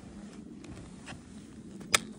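Skiers shifting in deep powder snow: a low, faint rustling with a few soft taps, and one sharp click near the end.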